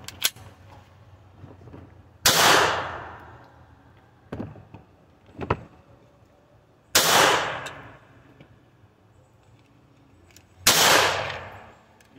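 Three single gunshots from a .22 firearm firing CCI Velocitor hypervelocity .22 LR rounds, spaced about four seconds apart, each with an echo fading over about a second.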